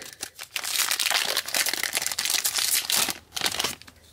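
Foil Disney Lorcana booster pack wrapper crinkling and rustling as it is pulled open by hand. The crackling is dense for about three seconds and dies down near the end.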